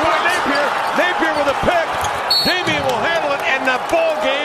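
Indoor basketball game sound: steady arena crowd noise with sneakers squeaking on the hardwood court and a basketball bouncing as it is dribbled.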